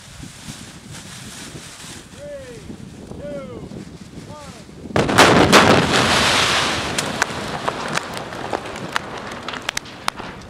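A large pyrotechnic napalm-effect fireball goes off with a sudden loud blast about five seconds in. The fire's roar follows for a couple of seconds, then sharp pops and cracks run on to the end. Before the blast come three short rising-and-falling calls about a second apart.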